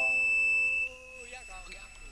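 A held keyboard chord from the isolated piano and electric-piano studio track cuts off abruptly about a second in. Faint studio talk follows.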